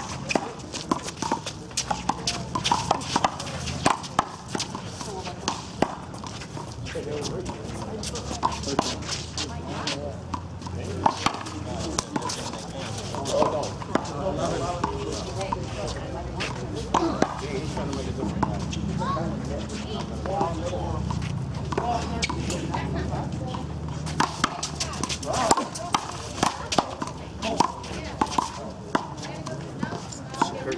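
Small rubber handball slapped by hand and smacking off the concrete wall and court, in irregular sharp knocks, with voices talking in the background.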